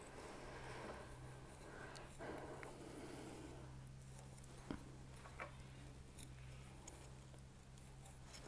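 Faint handling noise: soft rustling and a few small clicks as metal claw weights are moved along the machine knitting, over a low steady hum.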